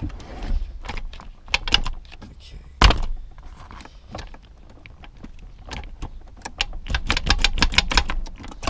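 Metal shifter cover plate and rubber gear-lever boot being worked up and off over a manual car's gear lever: a run of light clicks and rattles, with one sharp knock about three seconds in and a quick flurry of clicks near the end.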